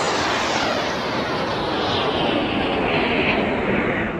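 Jet-like rushing sound effect, like an aircraft flying past, with a gently falling pitch; it starts fading out near the end.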